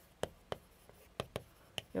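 Chalk striking a chalkboard during handwriting: about five short, sharp taps and ticks at an uneven pace.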